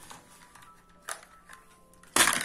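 Light plastic clicks from a clear compartment organizer box of jewellery being handled and moved across a table, with one sharper clack about a second in, over a faint steady background tone.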